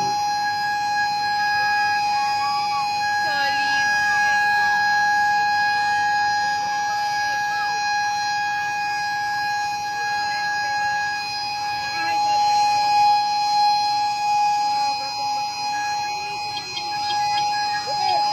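A steady warning tone held on one unchanging pitch, like a siren or horn sounding continuously, with people's voices underneath.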